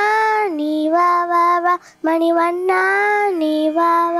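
A young girl singing a Tamil devotional song, holding long notes in two phrases with a brief breath between them about two seconds in.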